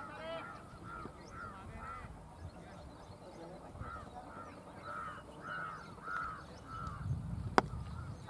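A bird calling over and over in short arched calls, about twice a second, then a single sharp crack near the end.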